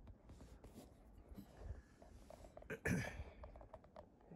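Faint handling noise: soft rustling and light taps as a guitar is turned and moved close to the microphone, with a short murmured vocal sound about three seconds in.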